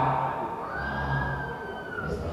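A man's voice amplified through a microphone and loudspeakers, in drawn-out recitation. A thin, steady high tone rings over it for the last second or so.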